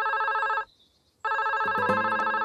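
Telephone ringing: a trilling ring that stops just after half a second in and rings again about a second in, in the ring-ring pattern of a call coming through.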